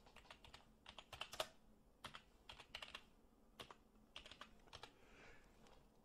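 Faint typing on a computer keyboard: a run of short, irregular keystrokes.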